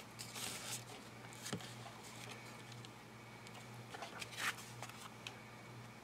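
Faint rustling and light taps of paper and card being handled and set in place by hand, a few short rustles with a slightly louder one about four and a half seconds in.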